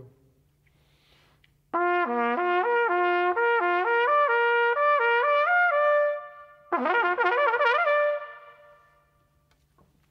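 Trumpet playing fast lip slurs, a brass flexibility exercise for getting the air moving fast: a run of notes stepping up and down that ends on a held note and dies away, then a second, quicker burst of rapid slurs ending on another held note that fades.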